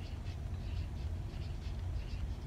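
Felt-tip marker drawing small looping circles on paper: faint, quick strokes of the tip rubbing on the paper, a few a second, over a low steady hum.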